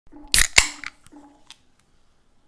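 An aluminium drink can's ring-pull being opened: two sharp cracks about a quarter second apart, the second trailing into a short fizzing hiss as the gas in the carbonated drink escapes, then a few faint ticks.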